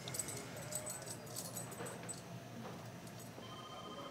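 Light metallic jingling and clicking of a bracelet being handled, for about the first two seconds, over a low room hum. A faint thin tone sounds near the end.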